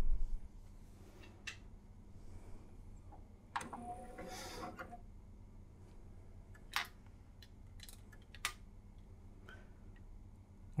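A low thump as the CD is set on the tray. About three and a half seconds in, the tray is drawn shut with about a second of motor whine from the Sony CDP-611's belt-driven tray mechanism. After that come a few sharp clicks from the mechanism as the player tries to read the disc, which it fails to recognise: the no-disc fault.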